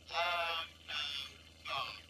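A faint voice speaking in three short phrases over a steady low hum. This is demo audio whose background noise has been cut back by the Pixel's Audio Magic Eraser.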